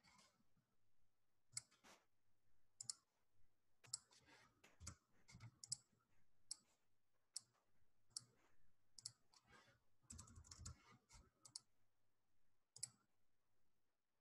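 Faint, irregular clicking: a dozen or so short sharp clicks spread out, with a quick run of several about ten seconds in, over a faint low hum.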